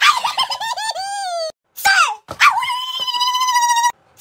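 High-pitched squealing voice: a string of short sliding whines, a brief break, then one long wavering held squeal that cuts off just before the end.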